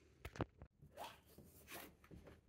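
Faint handling noise: a few quick clicks about a quarter second in, then soft rubbing sounds.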